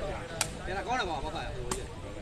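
Two sharp cracks of a sepak takraw ball being kicked in a rally, about a second apart, over faint spectators' voices.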